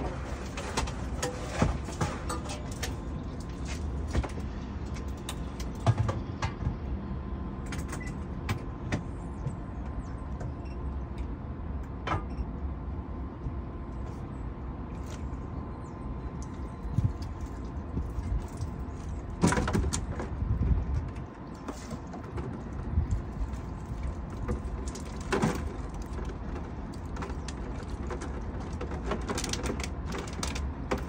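A boat's motor running with a steady low rumble, with scattered knocks and clatters from the hull and fittings; the loudest cluster of knocks comes about two-thirds of the way through.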